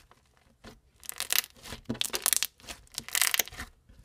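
Crunchy blue slime with small white beads pressed and squeezed by hand, giving crisp crackling pops. The pops come in several bursts after a quiet first second.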